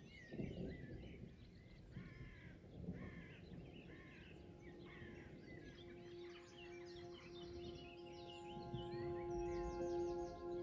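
Faint birdsong, with several birds calling over and over in short chirps and rising and falling calls. About halfway through, soft music comes in with long held notes under the birds.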